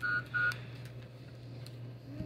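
Quick electronic beeps of one unchanging pitch, two in the first half second, followed by a steady low hum of room background.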